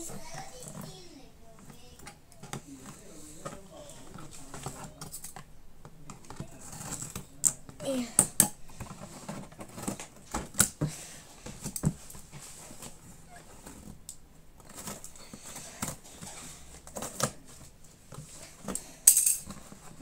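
Scissors snipping through packing tape on a cardboard box, with the box being handled and knocked on a wooden floor: scattered sharp clicks and knocks with quiet stretches between.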